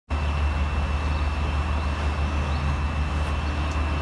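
Steady low hum with hiss and a thin high whine, unchanging throughout: constant machine-like background noise in the room.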